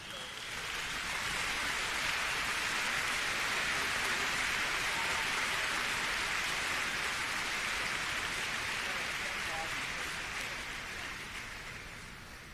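Large hall audience applauding. The applause builds over the first second or so, holds steady, and fades away near the end.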